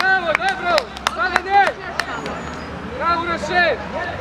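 Voices shouting short calls on a football pitch, in a quick run of calls over the first two seconds and another burst about three seconds in, with a few sharp knocks among them.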